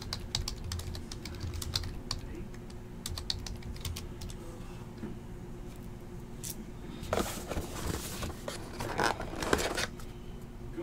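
A scattered run of light, sharp clicks and taps, then louder rustling and handling of the cardboard trading card box near the end as it is opened.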